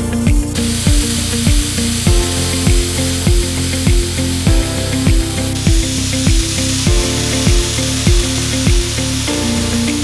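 Hand-held pulse laser ablating rust from a steel plate: a steady high hiss that starts about half a second in and grows brighter about halfway through. It plays over background music with a steady beat.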